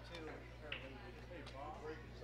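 Faint background conversation in a pool hall over a steady low hum, with a brief sharp click a little after half a second in.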